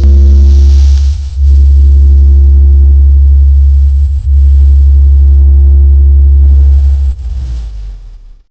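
Very loud, deep sustained bass tone from an Indian DJ competition 'vibration' mix, a held sub-bass note with faint higher overtones. It is held in three long stretches with brief breaks about a second in and about four seconds in, then weakens and cuts off near the end.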